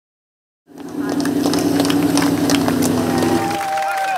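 Rally truck engine held at steady high revs while the truck slides on gravel, with loose stones clattering irregularly. The sound cuts in abruptly under a second in and stops abruptly about three and a half seconds in.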